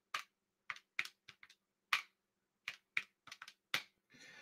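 Keys being typed on a keyboard: about a dozen short, irregular clicks.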